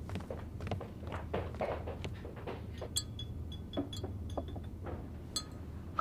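Soft footsteps, then a spoon clinking lightly against a glass several times, stirring a drink.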